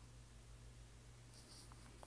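Near silence: room tone with a steady low hum, and a faint stylus tap on a tablet screen near the end as a point is plotted.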